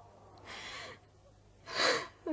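A woman's sobbing breaths in distress: a drawn-in breath about half a second in, then a louder, sharp gasp near the end.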